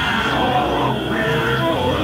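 Haunted-house soundtrack playing: a steady low drone with short sliding tones over it. A man laughs briefly at the start.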